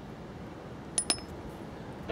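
Two quick metallic clinks about a tenth of a second apart, each with a short high ring: the steel engine valve just pulled from the damaged cylinder head knocking against metal.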